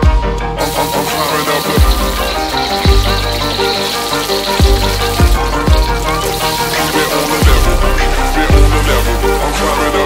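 Hip-hop backing track with a heavy bass beat, over food sizzling in hot vegetable oil in a wok. The sizzle starts about half a second in as garlic and onion slices go into the oil.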